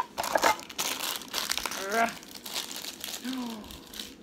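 Plastic wrapping crinkling and rustling as a small vinyl figure is unwrapped by hand, with a sharp click right at the start and a couple of short hums from the person unwrapping it.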